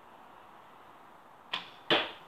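An arrow shot at a cardboard archery target: a sharp snap of the bowstring on release near the end, then less than half a second later a louder thud as the arrow strikes the cardboard.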